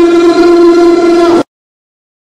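Live pagodão band music ending on one long, steady held note, which cuts off suddenly about one and a half seconds in.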